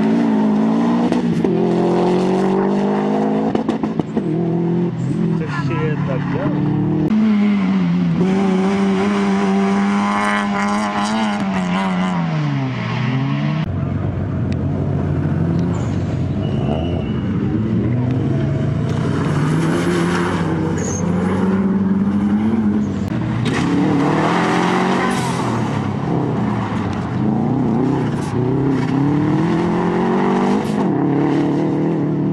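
Rally cars, including turbocharged Subaru Impreza flat-four engines, driven hard one after another. The engine pitch climbs under acceleration, drops at each gear change or lift for a corner, then climbs again, with an abrupt change about halfway through as one car gives way to the next.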